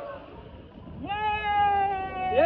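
A man's long, held 'woooo' whoop while riding down a water slide, starting about a second in with a quick upward swoop in pitch, then held nearly level and sinking slightly.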